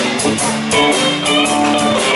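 Live instrumental rock played by a band with several electric guitars over a drum kit, the cymbals ticking steadily in time.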